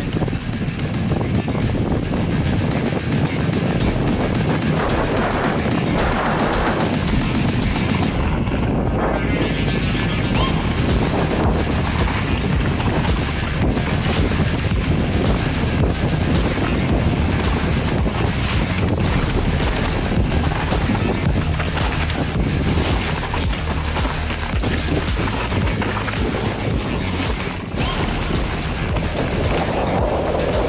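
Wind rushing over the microphone together with the tyre crunch, chain slap and rattle of a Specialized Epic Expert full-suspension mountain bike descending a dry, rocky trail: a steady dense noise broken by frequent sharp knocks.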